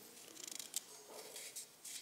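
Faint rustling of paper notes handled at a lectern, with a small click about three quarters of a second in, over quiet room tone.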